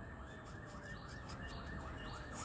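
Faint siren in the distance, its tone sweeping up and down rapidly, several times a second.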